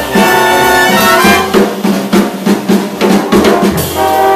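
Big band jazz played live: saxophones, trombones and trumpets hold a chord, then from about a second and a half in the drum kit plays a busy run of snare and kick hits punctuated by short ensemble stabs, leading toward the tune's ending.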